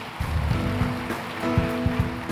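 Music with low drum beats, sustained chords coming in about halfway, over a dense wash of audience applause.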